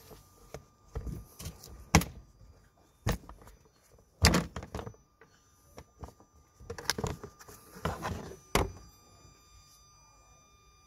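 Plastic Ford Duratorq TDCi engine cover being pulled off its mounts by hand: several sharp thunks and clicks at irregular intervals, the loudest about two and four seconds in.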